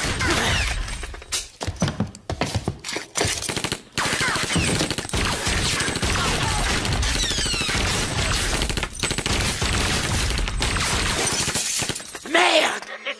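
Sustained automatic gunfire from a film soundtrack shootout: dense bursts of shots with a few brief lulls.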